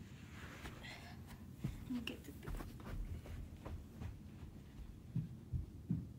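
Faint scattered thumps and knocks in a quiet room over a low steady background hum, the loudest thumps coming near the end.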